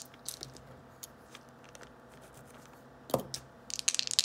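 Mostly quiet room with a few faint small clicks. About three seconds in there is a short low hum from a voice, and then a rapid run of small clicks and scratching starts near the end, from hands handling the tabletop game.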